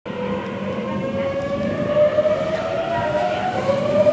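Tokyu 7700 series electric train pulling away from a station, its VVVF inverter and traction motors giving a whine that rises steadily in pitch as it accelerates, drops back and climbs again near the end, over the rumble of the wheels.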